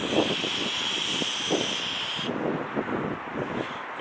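Box-mod vape being fired during a draw: a steady hiss with crackling from the coil, cutting off suddenly a little over two seconds in. Road traffic can be heard faintly behind it.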